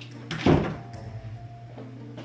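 A door shut once with a solid thud about half a second in.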